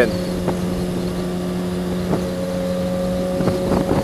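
Kawasaki ZX-6R 636 sport bike's inline-four engine cruising at highway speed, a steady even engine note that holds one pitch, with wind noise underneath.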